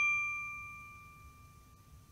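A single bell-like ding sound effect, struck just before and ringing out with a few clear tones, fading away steadily until it is almost gone.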